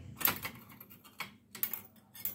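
Short bursts of rustling and scratching from a headscarf being handled and pinned close to the microphone, three or four quick scrapes with the strongest just after the start.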